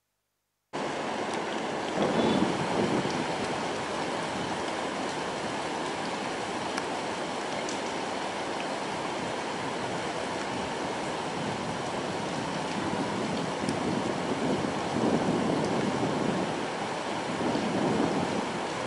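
Steady rush of river water flowing past the piers of a vented dam. It starts about a second in, after a short silence, and swells a little louder a couple of times.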